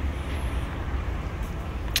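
Outdoor city street ambience: a steady low rumble of road traffic under a general hiss, with one brief sharp click near the end.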